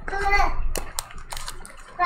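A brief vocal sound, then crackling and a few sharp clicks as foil trading-card packs are handled and lifted out of an opened cardboard hobby box by gloved hands.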